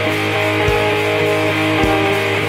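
Depressive black metal: distorted guitar chords held over a slow, steady beat, with a low thud about once a second.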